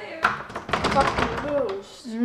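Door being handled: a sharp knock about a quarter-second in, then a quick run of clicks and rattles from the handle and latch. A brief murmured voice follows near the end.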